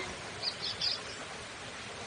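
A few short, high bird chirps in quick succession about half a second in, over a steady background hiss of outdoor ambience.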